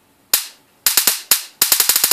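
Sharp snapping sparks from a small high-voltage step-up generator module, rated up to 400,000 volts, as its output arcs. A single snap, a few more about a second in, then a fast run of about a dozen snaps a second near the end.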